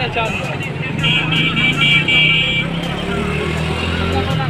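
People talking over a steady low motor drone, with a high pulsing beeping that lasts about a second and a half, starting about a second in.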